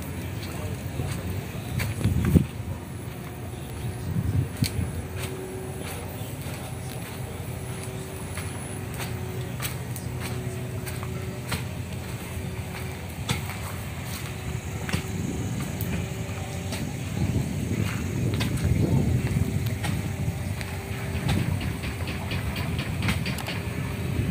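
Footsteps and camera handling noise of someone walking on open ground, over a steady low rumble, with scattered light clicks throughout.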